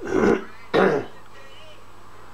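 A person coughs twice, two short, loud coughs in quick succession in the first second.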